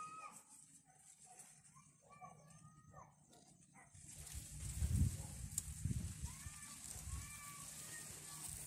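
Short rising-and-falling animal calls repeating about once a second in the background. From about halfway, wind rumbles and buffets on the microphone.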